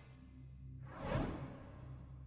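A whoosh sound effect that swells and fades about a second in, over a faint, steady low music bed.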